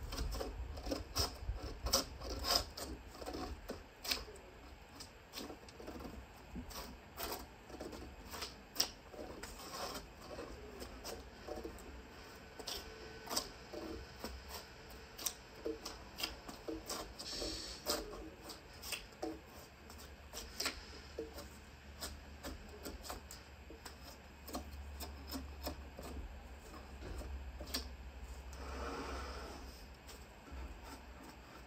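Drawknife peeling bark off a log: a string of short, irregular scraping strokes and clicks as the blade bites in and strips the bark. The bark is tight on the log in late fall and hard to peel.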